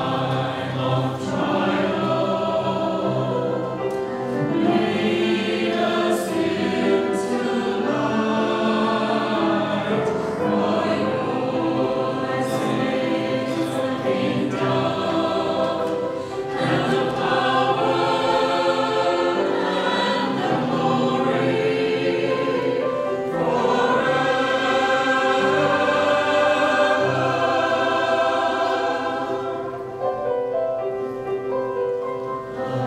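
A small mixed choir of men's and women's voices singing a choral piece in parts, in long held phrases with brief breaks between them.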